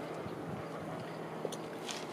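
Quiet outdoor background: a steady faint hiss with a low hum, and a couple of small faint ticks near the end.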